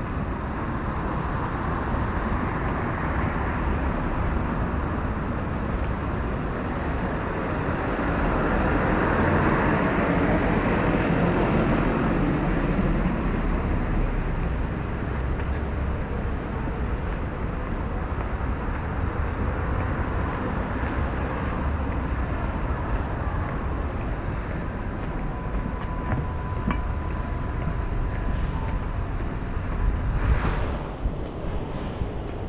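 City road traffic: a steady rumble of cars going by on the road beside the pavement, swelling louder as a heavier vehicle passes about ten seconds in.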